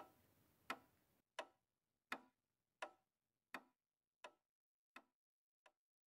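Faint, evenly spaced ticks, about three every two seconds, growing fainter and dying away near the end.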